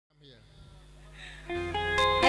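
Live dangdut band music fading in from silence, with guitar; it gets louder about one and a half seconds in as held notes and a low bass come in.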